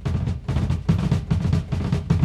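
Acoustic drum kit played fast: a rapid, even run of bass drum strokes, the heel-toe pedal technique, with other parts of the kit sounding above them.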